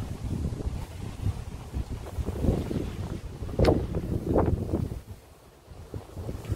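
Wind blowing on the microphone, an uneven low rumble that rises and falls in gusts, with two short louder noises about three and a half and four and a half seconds in.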